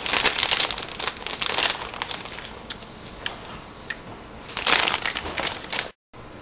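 Plastic bag of shredded cheddar cheese crinkling as cheese is shaken out of it onto tacos, in a long spell over the first two seconds and again briefly near the end, with a few small rustles between.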